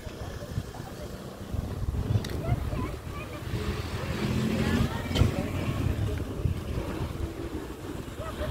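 Wind rumbling on a phone's microphone, with people's voices in the background from about a second and a half in.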